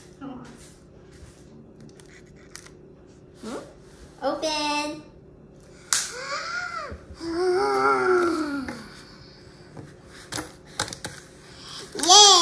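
A young girl's wordless vocal sounds: a held high note about four seconds in, then rising-and-falling squeals and laughing-like calls, with a few sharp clicks between them.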